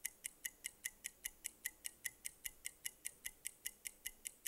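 Game-show countdown clock ticking: quiet, fast, evenly spaced ticks, about five a second, as the answer time runs down.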